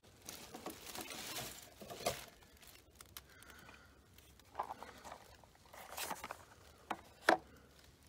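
A cardboard ammunition box rustled and scuffed as it is handled next to a chronograph on a wooden stand. Near the end comes a sharp knock as the box is set down on the wood.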